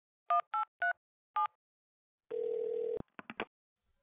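Mobile phone keypad dialing: four short two-note touch-tone beeps, then a ring tone sounding once for under a second, followed by a few quick clicks as the call goes through.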